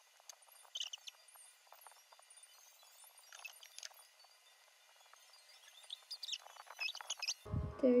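Faint background music of high, chime-like notes in a few short clusters, about a second in, midway and near the end, with no low end.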